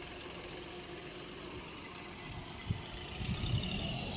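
Mahindra Bolero SUV's engine running at idle, a steady low rumble, with a short click about two-thirds of the way through and the engine noise growing louder and more uneven near the end.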